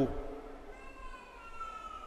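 A pause in a man's amplified speech: his last word dies away at the start, then a faint, drawn-out high tone slowly rises in pitch for the rest of the pause.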